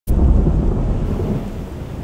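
A deep rumble of thunder that starts abruptly and slowly fades.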